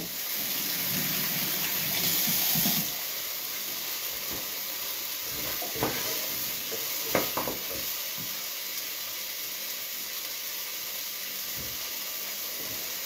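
Cut pumpkin frying in a sofrito in a pan: a steady sizzle, louder in the first three seconds, with a few light clicks of a utensil partway through.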